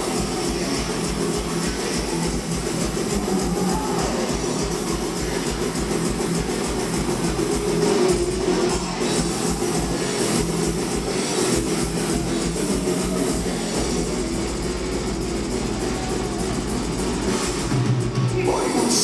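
A heavy metal band playing live without vocals: distorted electric guitars over fast, driving bass-drum beats and cymbals.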